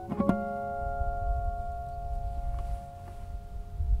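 1985 Bown 'Renbourn' acoustic guitar fingerpicked: two notes plucked in quick succession near the start, then the chord is left ringing and slowly fades.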